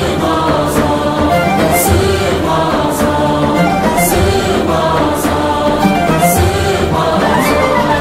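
Live music: a male choir singing with a small ensemble of traditional lutes, reed pipe and frame drums. A drum beat lands about once a second.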